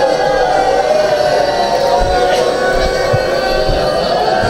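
Voices chanting a mourning lament (noha) together, the pitch wavering, with a few dull low thumps in the second half.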